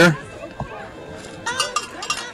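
Cowbells ringing briefly near the end, a short metallic jangle after a quieter stretch.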